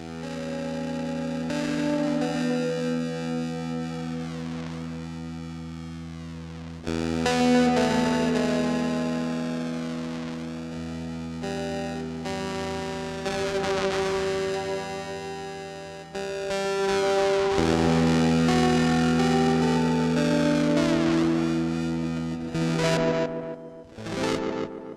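Electric guitar chords played through a Eurorack modular effects rack, modulated ring-mod style, giving a distorted, effected tone with sweeping overtones. The chords are held and re-struck several times, with new chords coming in clearly about seven seconds in and again around sixteen seconds.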